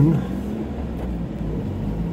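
Nissan Hardbody pickup driving on a sandy track, heard from inside the cab as a steady low engine and road drone.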